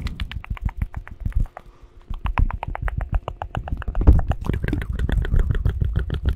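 Fast ASMR triggers close to a microphone: a rapid run of short clicks and soft thumps, about ten a second. The run eases off briefly about two seconds in, then comes back denser and louder.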